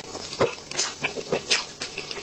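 Close-miked eating of soft chocolate cake: irregular wet mouth smacks and chewing clicks, with a metal spoon scooping cake from a paper box. The loudest smacks come about half a second and a second and a half in.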